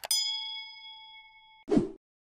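Subscribe-button animation sound effect: a quick double mouse click, then a bell ding that rings and fades for about a second and a half before cutting off. A short noisy burst follows near the end.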